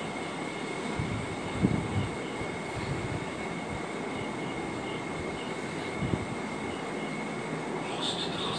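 Steady low rumbling background noise with a faint constant high-pitched whine. A few dull low thumps come about two seconds in and again about six seconds in.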